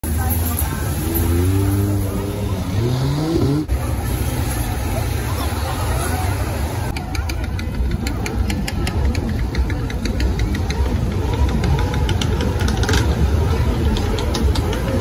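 A sport side-by-side UTV's engine revving, its pitch climbing over the first few seconds. After a sudden break, a steady din of crowd voices and vehicle engines takes over.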